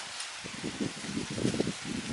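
Hands pressing and firming soil around a newly planted coffee seedling, with irregular soft crunches and rustles of dry leaf litter.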